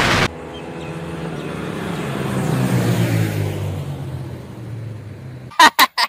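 A loud rush of wind on the microphone cuts off just after the start. Then a 150cc single-cylinder motorcycle engine runs, growing louder for about three seconds and fading again. A man's voice begins near the end.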